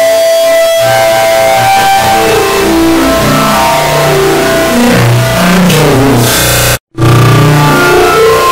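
Very loud, dense wall of guitar music, the same intro piece layered over itself many times into a cacophony, constantly at full level. A hissing rise near six seconds cuts to a split second of silence, and the layered music starts again.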